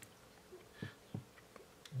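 Near silence with four faint, short clicks spaced through it, the last just before speech resumes.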